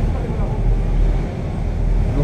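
Steady low rumble aboard a moving Bateaux Mouches river tour boat: the boat's engine and wind across the microphone, with faint voices in the background.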